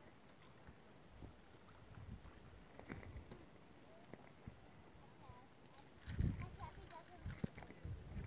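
Footsteps on a wooden boardwalk: soft, irregular low thuds, with the two loudest in the last two seconds.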